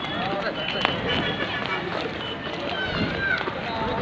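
Footsteps of a group walking on a paved road in sandals, with indistinct voices over them.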